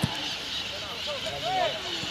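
Footballers' shouts carried across an open pitch, faint and scattered, strongest about halfway through. A single sharp thump comes at the very start.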